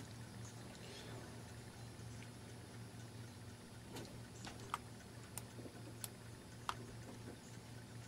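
Quiet room with a steady low electrical hum and about five faint, sharp clicks in the second half, roughly two-thirds of a second apart.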